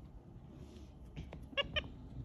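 A capuchin monkey gives two short, high squeaks in quick succession about a second and a half in, amid small plastic clicks as it handles a pop-it fidget toy.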